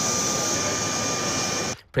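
Jet engines of a taxiing twin-engine jet airliner: a steady rushing whine with two high tones held level, cut off suddenly near the end.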